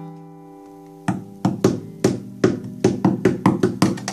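Cutaway acoustic guitar: a chord rings out and dies away for about a second, then a run of about a dozen short, sharp strums follows, coming quicker toward the end.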